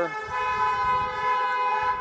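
A car horn sounding in one long, steady honk that lasts nearly two seconds.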